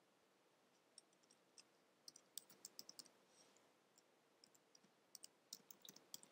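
Faint clicks of computer keyboard keys being typed: two single taps, then a quick run of keystrokes about two to three seconds in and another run near the end.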